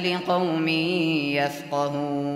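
A man reciting the Quran in slow, melodic tilawa, holding long drawn-out notes. The voice breaks off briefly about one and a half seconds in, then takes up a new held note.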